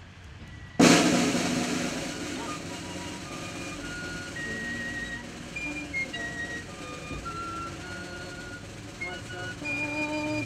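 Snare drum roll that starts sharply about a second in, loudest at the onset, then settles and is held at a lower, steady level.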